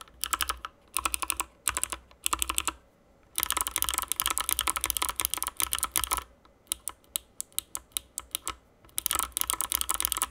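Typing on a Motospeed CK61 mechanical keyboard with Kailh Box White switches. Each keystroke gives a sharp, audible click from the click bar inside the switch. A few short bursts of keystrokes are followed by a fast run of about three seconds, then a few scattered presses, and another fast run near the end.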